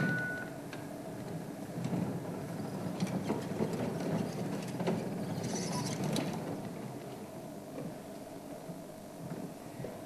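A vehicle engine running, the sound growing louder a couple of seconds in and easing off toward the end. A brief rustle of brush sounds about six seconds in.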